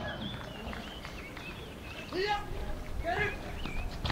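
Background ambience with small chirping calls, and two short voice-like calls about two and three seconds in.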